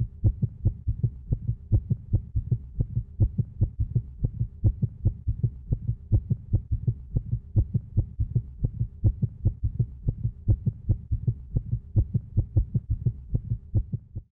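Heartbeat sound: a fast, even train of deep thumps, with a faint steady hum behind it.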